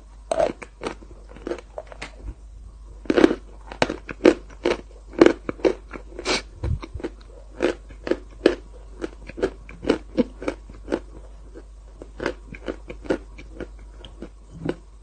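Close-miked ASMR eating sounds: sticky, wet smacks and clicks of a mouth eating Nutella off the fingers, coming irregularly two or three times a second.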